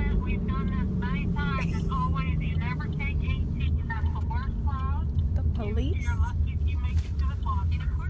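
Steady low rumble of road and engine noise inside a moving car's cabin, with voices talking over it.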